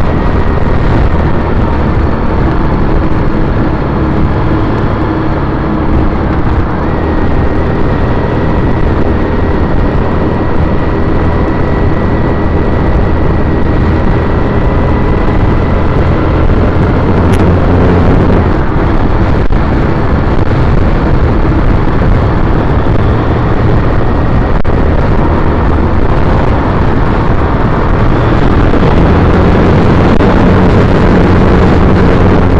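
2010 Triumph Bonneville T100's air-cooled parallel-twin engine running steadily under way, heard from on the bike. There is one brief sharp click about 17 seconds in.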